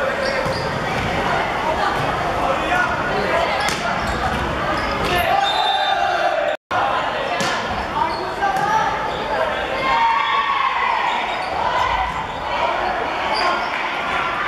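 Volleyball rally in a sports hall: sharp knocks of the ball struck by hands and hitting the floor, with players shouting over a steady hall din. The sound cuts out for a moment about six and a half seconds in.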